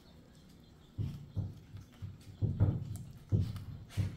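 Biting into and chewing a fried chicken wing: after about a second of quiet, a run of four or five soft, sudden crunching thumps.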